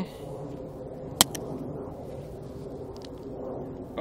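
A single sharp click about a second in, a camera button being pressed to bring up the histogram, over a steady low background hum.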